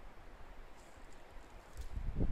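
Quiet outdoor woodland ambience: a faint low rumble with a few faint ticks and rustles around the middle.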